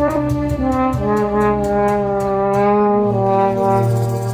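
French horn playing the intro melody in slow, long-held notes over a steady low sustained tone.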